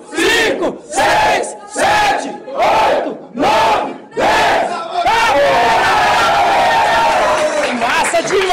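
A group of people shouting counts in unison, about one shout a second, in time with push-ups; from about five seconds in it breaks into one long, continuous group yell.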